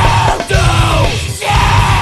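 Metalcore demo recording: distorted guitars, bass and drums playing a stop-start riff with short breaks about once a second, with yelled vocals.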